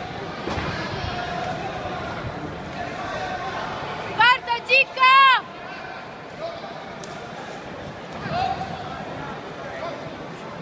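Hubbub of crowd chatter in a large hall. About four seconds in it is broken by three loud, high-pitched shouts close by, the last one the longest.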